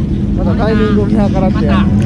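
A motorcycle engine running steadily with a low, even hum, and a man's voice talking over it.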